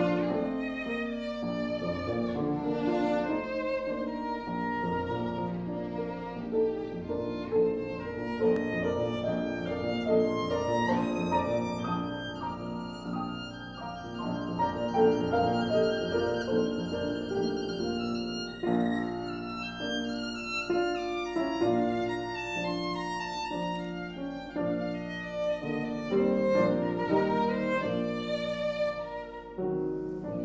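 Violin and an 1870 Baptist Streicher Viennese grand piano playing Romantic chamber music together, the violin carrying a sustained melodic line over the piano accompaniment.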